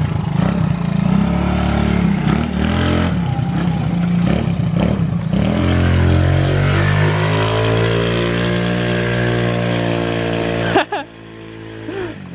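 Tuned 50 cc scooter with an 80 cc cylinder kit and an aftermarket exhaust, revving and then pulling away, its engine pitch rising and then holding steady. The engine sound drops off sharply near the end.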